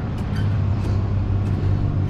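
Steady low rumble of motor vehicles, with no change in pitch or level.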